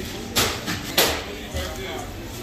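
Two sharp knocks about half a second apart, with voices in the background of a busy food counter.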